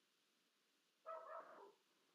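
Near silence, with one faint, brief high-pitched call about a second in.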